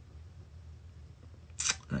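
Quiet room tone with a faint low hum, broken near the end by a short noisy burst and the first word of speech.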